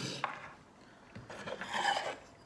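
Aluminium roller blind tube rubbing and scraping as it is slid and turned on a hard tabletop by hand, in two spells: one fading out shortly after the start, a louder one building near the end.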